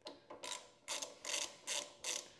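Ratchet wrench clicking in short bursts, about one every half second, as its handle is swung back and forth loosening the 12-point 10 mm brake caliper bolts.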